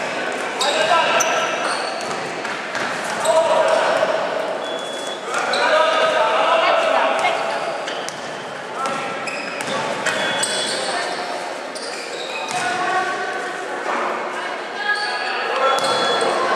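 Indoor basketball game: the ball bouncing on the hardwood-style court as it is dribbled, sneakers squeaking on the floor, and players and spectators calling out, all echoing in the large hall.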